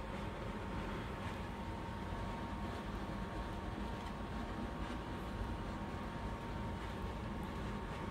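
Steady room background noise: a low hum and hiss with a faint, thin whine held at one pitch.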